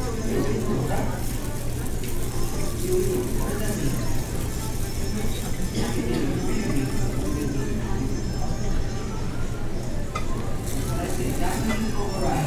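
Room tone of a busy indoor food hall: a steady low hum with indistinct voices in the background.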